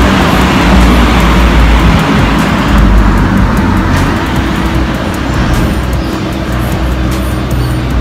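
City street noise with passing traffic: a steady, loud rumble and hiss. Background music plays underneath.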